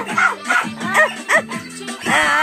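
A puppy giving a few short, high yips and whimpers over music.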